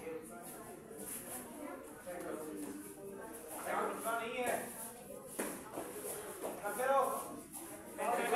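Indistinct voices calling out and talking, with a single sharp knock about five and a half seconds in.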